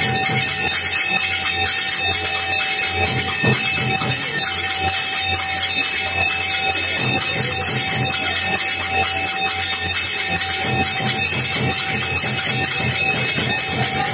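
Temple bells rung rapidly and without a break for the aarti, the lamp-waving worship, with a sustained ringing tone and low beats underneath.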